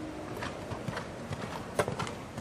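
A horse's hoofbeats on a dirt arena as it lands from a fence and canters on. There is a strike about every half second, and the loudest comes near the end.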